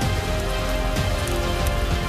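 A large open fire burning, a steady rushing roar with crackle, under sustained backing music.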